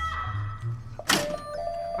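Music: a held note dies away at the start, then a sharp struck hit rings out about a second in, leaving steady tones sounding.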